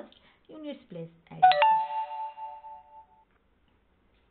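A loud bell-like chime, like a doorbell, rings once about a second and a half in, its tones dying away over under two seconds. A few words of speech come just before it.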